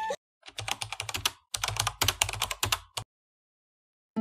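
Computer keyboard typing sound effect: a quick run of key clicks in two bursts with a brief pause between, stopping abruptly about three seconds in.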